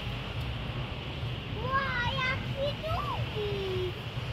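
PKP Intercity electric train moving slowly past the platform with a low, steady rumble. From about a second and a half in, a child's voice calls out in high, gliding tones for about two seconds.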